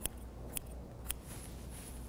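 Scissors snipping into muslin three times, about half a second apart: clipping the fabric where it binds on a dress form.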